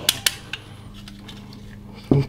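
Plastic action figure handled in gloved hands: a few light clicks in the first half-second, then quiet handling with a faint steady hum.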